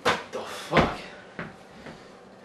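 A few sharp knocks and clunks, like a cupboard or door being handled. The two loudest come at the start and just under a second in, followed by fainter taps.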